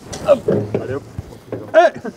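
Speech only: men's voices, with a short exclamation near the end.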